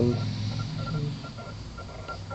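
A man's drawn-out 'um' at the start, then quiet room tone with a faint high electronic tone that keeps breaking off and coming back.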